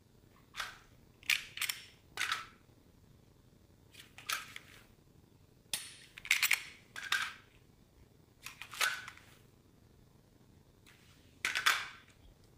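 Handgun shots, about a dozen sharp reports fired singly and in quick pairs or threes at uneven intervals, each with a brief ringing tail.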